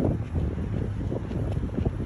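Wind buffeting a phone's microphone while walking: a loud, uneven low rumble that rises and falls in gusts.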